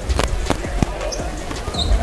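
Basketball bouncing on a hardwood court, a few irregular sharp thuds within the first second.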